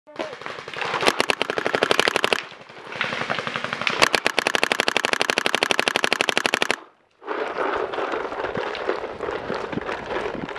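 Paintball marker firing rapidly in two long bursts of evenly spaced shots, the second running several seconds before cutting off suddenly.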